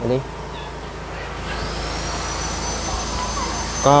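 CA30 power amplifier switched on, its cooling fan spinning up: a high whine rises and then holds steady over a rush of air, starting about a second and a half in.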